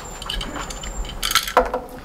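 Small metallic clicks and clinks of a pistol being handled and loaded with a test bullet, its magazine being fitted into the grip, with a quick run of clicks about one and a half seconds in.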